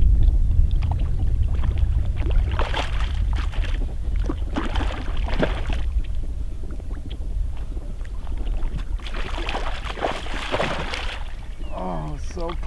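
Hooked rainbow trout splashing at the water's surface in three bouts, about three seconds in, around five seconds and again near the end, over a steady low rumble of wind on the microphone.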